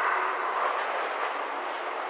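A steady rushing noise, even and without any low rumble, that starts abruptly.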